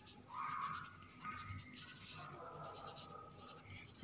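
Faint scratching of a pencil writing letters on a workbook page.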